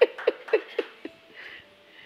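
A man laughing: a run of short falling "ha" pulses, about four a second, that trail off about a second in, leaving only faint breathing.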